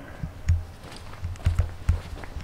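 Footsteps on a walkway: several dull thumps roughly half a second apart.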